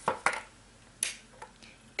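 Handling noise as a sewing tape measure is laid beside metal chain lengths on a tabletop: a short rustle at the start and one sharp click about a second in.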